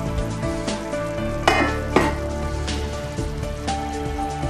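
Mutton curry sizzling in the pan, with two louder stirring sounds a little before halfway through, over background music.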